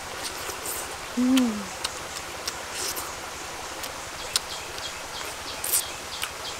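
A woman's closed-mouth 'mmm' of enjoyment while eating boiled frog, one falling hum about a second in, with small clicks and smacks of chewing and sucking on the frog meat around it.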